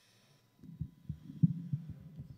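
A run of low, muffled thumps starting about half a second in, four or five strong ones within a second and a half, the loudest near the middle.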